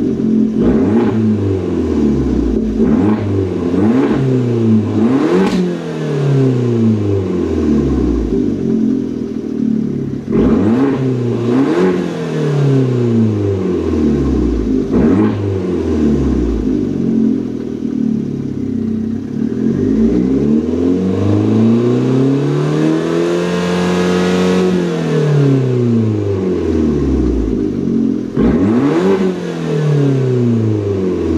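2015 Fiat 500 Abarth's turbocharged 1.4-litre four-cylinder being revved while the car stands still: a run of quick throttle blips, each rising and dropping back, then one longer, slower rev about three-quarters of the way through, and another blip near the end.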